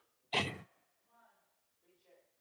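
A man sighing into a close microphone: one loud, short breath out shortly after the start, followed by a faint voiced murmur about a second in.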